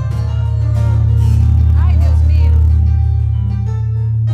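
Live band playing a short sample: a long, loud held low bass note under keyboard and guitar.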